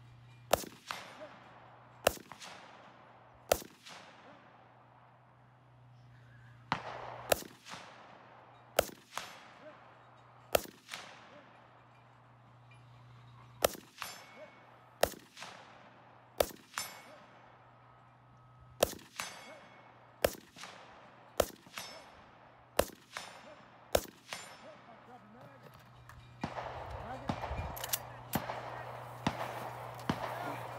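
Slow, aimed single shots from an AK-pattern rifle fired prone, about eighteen shots spaced one to three seconds apart, each with a short echo and some followed by a faint ring of struck steel targets. Rustling of gear near the end as the shooter gets up.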